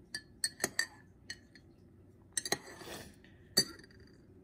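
Metal spoon clinking against the inside of a ceramic mug while stirring a drink: a run of quick, light clinks, a short swishing stir, then one louder clink near the end as the spoon is left resting in the mug.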